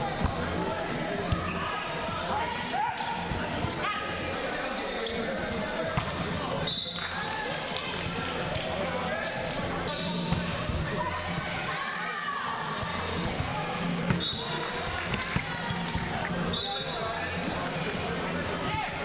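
Indoor volleyball in a large echoing gym: sharp thumps of the ball being bounced, served and hit, with brief high squeaks of sneakers on the court floor and players' voices throughout.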